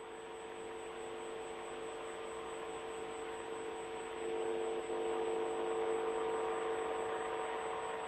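Steady hum made of a few held tones over a hiss, with no voices, growing slightly louder about four seconds in: the background noise of a live broadcast audio feed.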